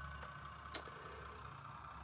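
Faint steady hum of an OO gauge model diesel multiple unit running on the layout, with one sharp click about three-quarters of a second in.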